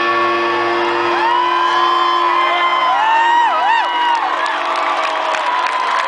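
A live band's held closing chord ringing out while the crowd cheers, with high, gliding whoops from about a second in to near the four-second mark.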